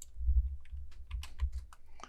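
Computer keyboard keys clicking: a run of quick, irregular clicks over a low rumble.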